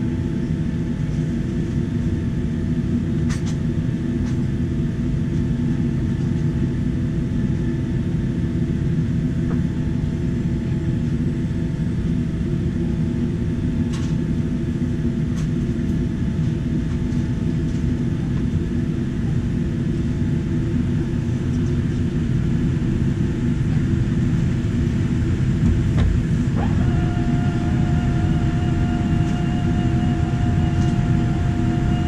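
Steady low rumble inside the cabin of a Boeing 787-9 on the ground, with faint steady tones and a few faint clicks. Near the end a new steady whine with overtones starts and runs on.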